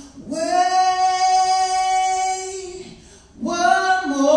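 A man singing unaccompanied in a high voice: one long held note that fades out a little before three seconds in, then a new phrase begins near the end.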